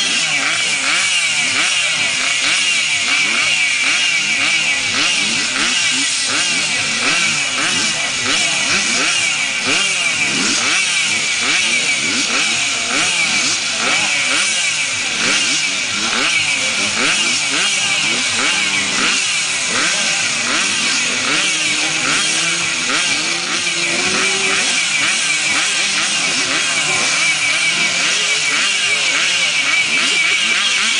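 A pack of junior grass-track motorcycles running together on the start line. The riders keep blipping their throttles, so many engine notes rise and fall over one another in a continuous, loud mix.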